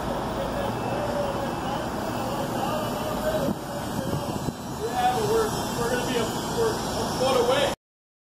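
Indistinct voices of workers talking over a steady bed of outdoor site and traffic noise. All sound cuts off suddenly near the end.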